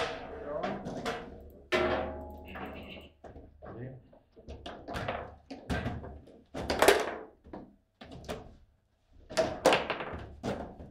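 Foosball table play: the hard ball and plastic players on steel rods knocking and clacking at irregular intervals, some strikes ringing briefly through the table, with the loudest knocks about seven seconds in and again just before the end.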